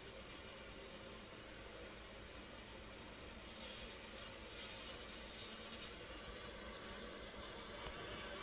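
Faint, steady buzzing of honeybees at a wooden hive, the colony clustered on the outside of the box in the heat.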